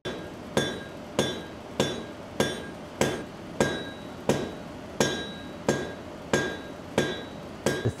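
Hand hammer forging red-hot iron on an anvil: steady blows, a little under two a second, each with a ringing metallic note from the anvil.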